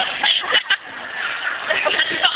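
Indistinct speech.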